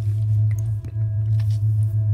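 Ambient background music: a steady low drone with faint held higher tones.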